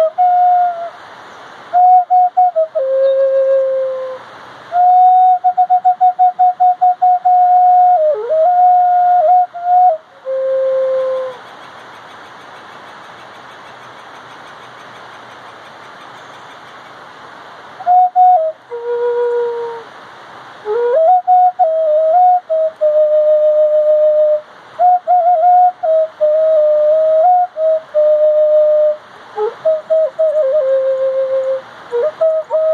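A flute playing a slow, low melody of long held notes that step between a few pitches, in phrases broken by short pauses, with quick pulsing on many of the held notes. About a third of the way in the playing stops for several seconds, leaving only a steady background hiss, before the flute comes back.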